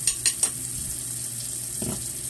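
Chuck roast sizzling as it browns in a pot on a gas flame, a steady hiss. Three quick clicks come in the first half second as pieces are dropped into the pot, and there is a soft knock near the end.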